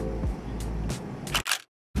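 A person drinking from a plastic bottle, with gulps and small clicks of the bottle. About a second and a half in come two sharp clicks, and then the sound cuts out to dead silence.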